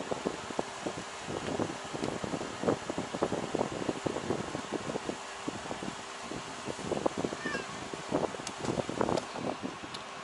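A cat play-fighting with a person's hand on bedding: irregular scuffling and rustling of fur and fabric, with small cat sounds now and then.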